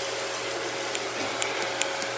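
Steady hiss with a faint low hum, like a fan or household appliance running, with a few faint small ticks.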